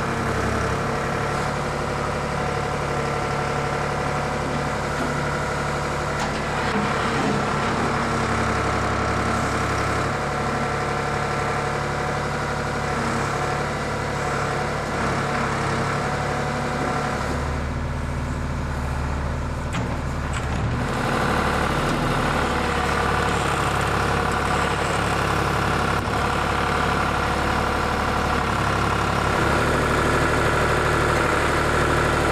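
Ford backhoe's engine running steadily as its bucket digs out a tree stump. The low rumble swells for a few seconds past the middle, then the higher sound returns sharply.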